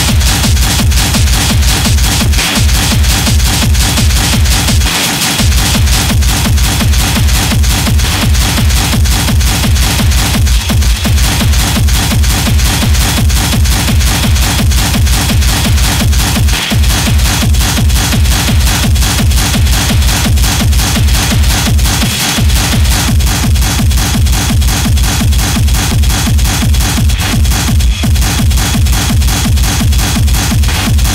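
Schranz (hard techno) track playing: a fast, evenly repeating heavy kick drum under dense, driving percussion, with the bass dropping out for a moment about five seconds in.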